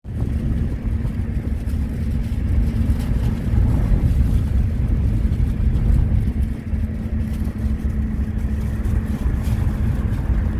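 Road-vehicle cabin noise while riding as a passenger: a steady low rumble of engine and road with a constant low hum.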